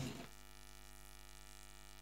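Faint, steady electrical mains hum: a buzz made of many evenly spaced tones.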